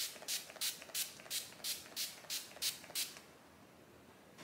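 Urban Decay All Nighter makeup setting spray misted from its pump bottle in a quick run of short sprays, about three a second and about ten in all, stopping about three seconds in.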